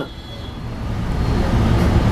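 Low rumble of passing road traffic, growing louder over the two seconds.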